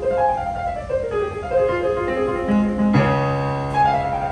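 Piano music played on a digital piano: a flowing line of single notes, then a full chord with a deep bass note struck about three seconds in.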